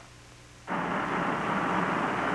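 Engines of two 1963 full-size cars, a Chevrolet Impala and a Ford Galaxie 500, running steadily at the start line before an acceleration run. The sound comes in sharply about two-thirds of a second in, after a brief quiet gap, as a steady rushing engine noise.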